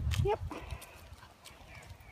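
A single short spoken 'yep' over a low rumble on the phone microphone, then a quiet stretch of outdoor ambience with a few faint soft ticks.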